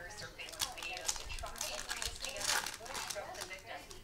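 Plastic-foil wrapper of a Panini Prizm basketball card pack crinkling and tearing as it is ripped open, loudest about two and a half seconds in.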